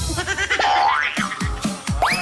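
Game-show music cue with comic sound effects: a rising whistle-like glide about halfway through, then several quick falling boings.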